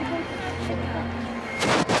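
A sudden loud burst of noise near the end, in two bangs close together, lasting under half a second, over a steady background of park music and hum.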